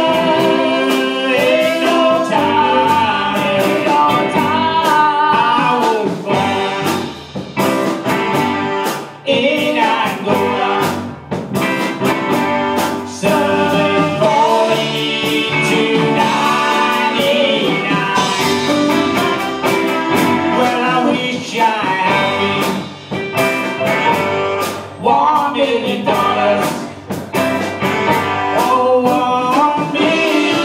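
Live band playing a bluesy R&B number: electric guitars and drums under a lead melody that bends in pitch, with a regular beat of drum hits.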